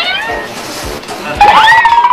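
Comic sound effects with sliding pitch glides, one rising then falling near the end, over background music.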